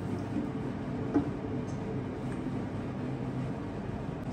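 A bowl of blended ingredients being emptied into an enamelled stew pot on the stove, with one sharp knock against the pot about a second in, over a steady low kitchen hum.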